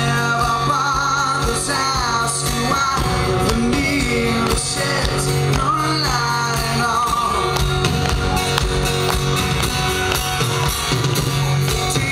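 Live band performance: a man sings lead with vibrato over strummed acoustic guitar, bass guitar, drum kit and keyboard.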